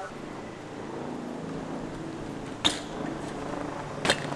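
Steady low hum of a motor vehicle running in the street, with one sharp knock about two and a half seconds in.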